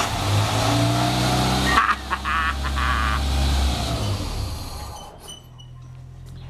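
Suzuki Vitara engine running just after its first start following a rebuild, revved up at first and then dropping back to a quieter, steady idle from about four seconds in.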